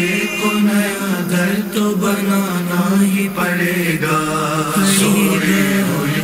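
Male voice chanting a devotional Urdu manqabat, a melodic sung line over a steady low hum.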